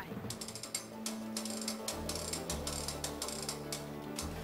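Hand-cranked lift of a rolling-ball machine being turned to raise the ball, a rapid run of mechanical clicks from its crank mechanism, with background music underneath.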